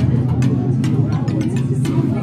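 Indistinct voices over a steady low rumble, with a few clicks.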